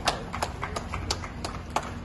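A small group of people clapping by hand, unevenly and out of step, a few claps a second.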